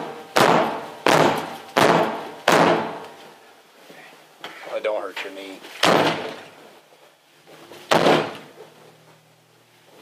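A closed apartment door being kicked in, each kick a heavy slam against the door. Four come in quick succession, about 0.7 s apart, then two more spaced a couple of seconds apart, and the door does not give way.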